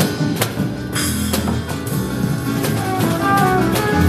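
Acoustic guitar and drum kit playing an instrumental passage with no vocals, the drums keeping a steady beat of drum and cymbal strikes under the strummed and picked guitar.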